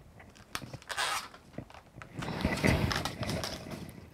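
Latex modelling balloons being handled and set down: a few light knocks and a short rustle about a second in, then a stretch of rubbing latex-on-latex handling noise for over a second.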